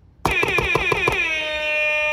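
Air horn sound effect: a quick string of about eight short blasts in about a second, then one long held blast that slowly fades.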